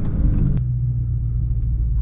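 Dodge Charger Scat Pack's 6.4-litre HEMI V8 running low and steady at light throttle, heard from inside the cabin at about 40 mph. The note steps down slightly about half a second in, with a single short click at that moment.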